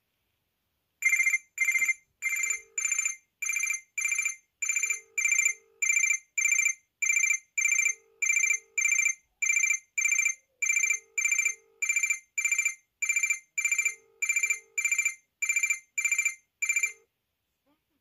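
Incoming-call ringtone of a Range Rover-branded Chinese mini mobile phone (model 88888): a long run of high electronic beeps, about one every 0.6 seconds, with a lower note under some of them. It starts about a second in and stops near the end.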